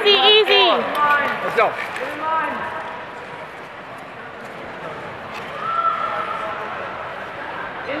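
Rink-side spectators at a short-track speed-skating race shouting and cheering, with long wavering yells in the first second. Then come a few shouted words and a low murmur of voices, and another drawn-out shout about six seconds in.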